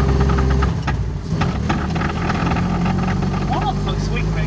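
A Honda D15 four-cylinder engine running, heard from inside the car's cabin. About a second in, its deep steady drone drops away, then the engine note climbs slowly as the car pulls. It is skipping and has no power, a fault the owners put down to a bad wiring harness.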